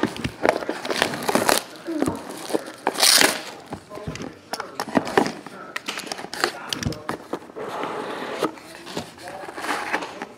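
Cellophane shrink-wrap being torn and crinkled off a box of trading cards, with a loud rip about three seconds in, followed by the cardboard box being opened and cards in plastic holders being handled.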